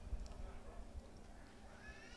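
Low-level room tone: a faint low rumble with a steady hum underneath.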